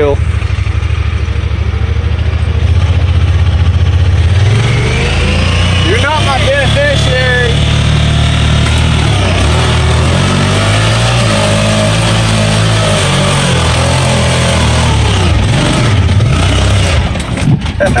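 Honda Pioneer 1000 side-by-side's engine under hard load on a steep dirt hill climb. The revs climb about four seconds in, then rise and fall as the vehicle works its way up the hill. A voice shouts briefly about six seconds in.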